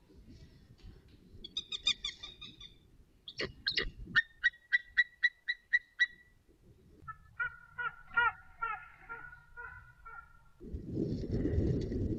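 A pair of white-tailed eagles calling at the nest: a regular series of short, high call notes, about five a second, followed by a second, lower-pitched and quicker series. A low rushing noise comes in near the end.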